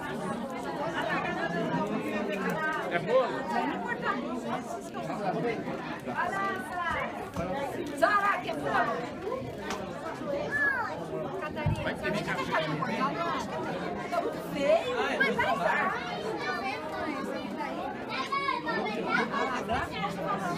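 Overlapping chatter of many people talking at once, with no single voice standing out.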